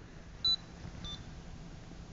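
A light harp's piezoelectric speaker beeping monophonic square-wave notes: one very short, louder beep about half a second in and a fainter short beep about a second in. Each beep is a note triggered as a finger comes close to the harp's red LED sensors.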